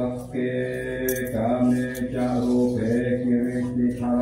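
A group of Buddhist monks chanting Pali verses in unison, a steady low near-monotone recitation whose syllables change while the pitch barely moves. The chant is taken up again right at the start after a short breath.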